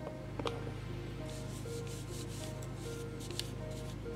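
A hand-held plastic tool rubbed back and forth over the flesh side of a piece of leather, a dry scraping rub, over quiet background music with held notes.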